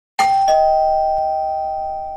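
Two-tone 'ding-dong' doorbell chime: a higher ding, then a lower dong about a third of a second later, both ringing on and fading slowly.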